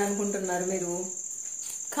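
A woman talking in Telugu for about the first second, then a pause. A steady high-pitched trill runs underneath the whole time.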